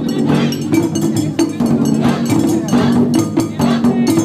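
Taiko drum ensemble playing large barrel drums and smaller drums with sticks, a dense run of rapid, loud strikes in a driving rhythm.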